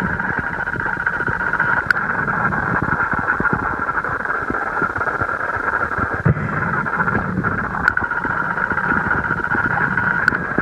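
Steady rushing of creek water heard by a GoPro camera underwater in its waterproof housing, with a couple of faint clicks.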